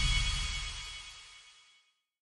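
Intro music with held tones over a heavy low end, fading out to silence about a second and a half in.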